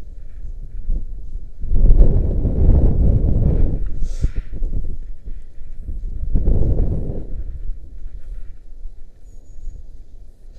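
Wind buffeting a body-worn camera's microphone as a rope jumper swings on the rope, surging twice: about two seconds in and again near seven seconds.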